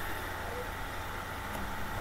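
Low, steady background hum and hiss with a faint constant high tone: the room's noise between spoken phrases.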